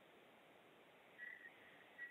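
Near silence in a pause between speakers, with a faint, short, high steady tone a little past a second in and a briefer one near the end.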